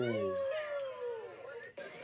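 A man's drawn-out wordless exclamation sliding down in pitch and ending about half a second in, overlapped by a higher, wailing cry that also slides down and fades just over a second in.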